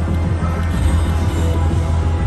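Electronic slot-machine music with a steady deep bass, playing as a video slot's reels spin and stop.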